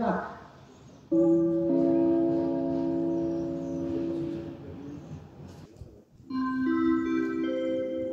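Station public-address chime of the INISS announcement system: a few sustained bell-like notes entering one after another and ringing together, sounding twice, the second time as a rising run of notes, as the signal that marks a train announcement.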